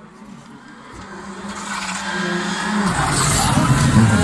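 Rally car engine approaching at speed, growing steadily louder. About three seconds in the engine note changes and the car sweeps past close by with a hiss of tyre noise.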